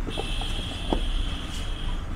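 A steady high-pitched electronic tone that starts just after the beginning and cuts off near the end, over a low rumbling background with a few faint clicks.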